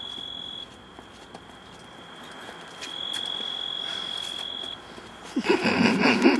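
An insect trilling in one steady high-pitched tone, fading for a couple of seconds and then coming back louder. A louder sound breaks in near the end.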